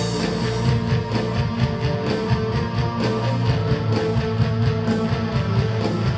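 Live band music with electric guitar to the fore over a steady, even beat.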